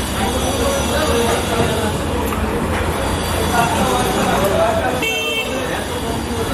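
Busy street ambience: several people talking in the background over a steady low traffic rumble, with a short vehicle horn toot about five seconds in.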